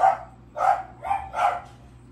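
A dog barking in a steady series, about three barks in two seconds.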